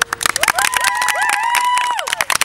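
A small group clapping, dense and fast. From about half a second in, several voices rise together into a long, high cheer that breaks off at the end.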